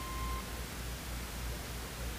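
Steady hiss and low hum of an old recording's soundtrack, with a brief steady beep tone, about half a second long, at the start.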